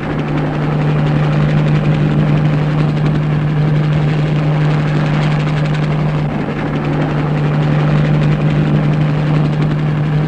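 Helicopter flying, its engine and rotor giving a loud, steady drone with a strong low hum underneath.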